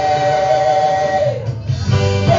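Live gospel worship music: a long chord held over a steady low beat, breaking off about one and a half seconds in before the band comes back in.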